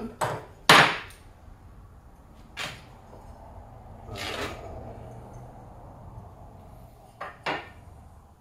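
Metal parts of a cabinet-hardware drilling jig being handled and set down on a wooden workbench as its stop is refitted: a few sharp clacks and knocks, the loudest just under a second in, a longer scrape at about four seconds, and two quick clicks near the end.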